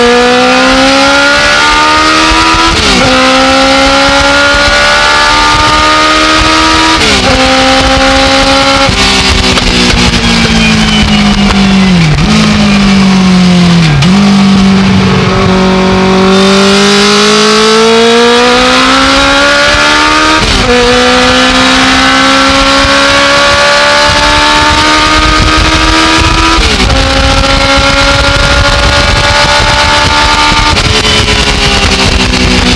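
Legends race car's Yamaha four-cylinder motorcycle engine at full throttle, heard from inside the cockpit, its pitch climbing through the gears with quick upshifts. About nine seconds in it lifts and the revs fall through two downshifts under braking, then it climbs through two more upshifts.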